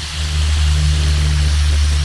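Battered catfish pieces deep-frying in a skillet of hot oil: a steady sizzle over a constant low hum from the gas burner underneath.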